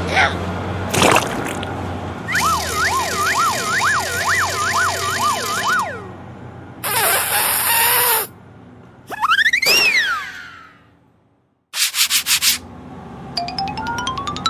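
A run of added cartoon sound effects: a wavering, siren-like wail rising and falling about twice a second, then a short hissing burst, a single whistle that rises and falls, a moment of dead silence, a quick rattle of pulses, and a rising tone near the end.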